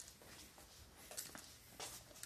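Near silence: faint room tone with a few soft clicks and rustles.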